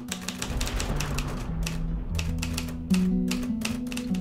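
Typewriter keys striking one after another, about four strokes a second at an uneven pace, over music with low held notes.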